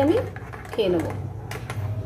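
A metal teaspoon stirring a drink in a ceramic mug, giving a few light, irregular clinks against the mug's side.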